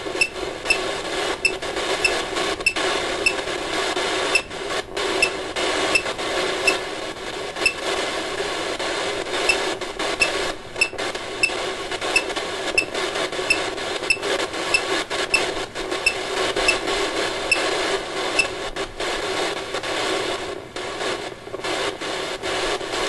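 Ghost-hunting 'spirit box' phone app playing steady static through the phone's speaker, with a short high blip repeating a little under twice a second and brief drop-outs in the noise.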